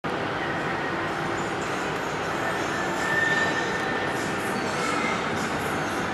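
Steady background noise of a large indoor ice rink hall: an even rumble and hiss with a few faint held tones.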